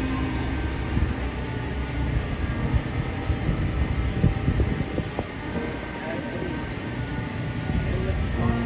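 Marching band and front ensemble playing a soft passage of held notes, heard faintly under a heavy low rumble on the phone's microphone, with some crowd voices close by.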